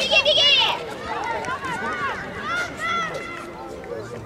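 Excited shouting in high voices during a rugby run toward the try line: one loud, shrill yell in the first second, then several shorter shouts.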